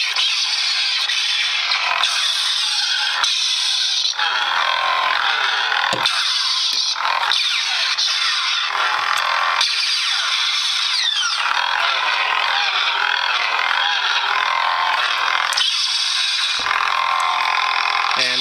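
Lightsaber sound effects from a Crystal Focus 4.2 soundboard playing a Novastar soundfont through the hilt's small speaker, with little bass: a pulsing hum with swing sounds that rise and fall in pitch as the saber is moved and spun, broken by a few short clash sounds on impact.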